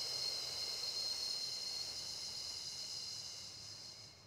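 A person's long, slow exhale: a steady breathy hiss that gradually fades away over about four seconds.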